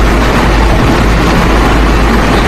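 A loud, steady rumble with hiss.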